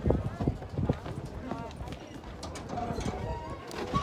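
Footsteps knocking on a wooden boardwalk as several people walk, a run of irregular hollow steps, with voices of people around.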